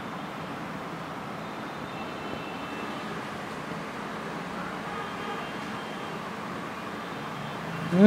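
Steady background noise with faint, thin squeaks of a marker writing on a whiteboard, a couple of seconds in and again about five seconds in.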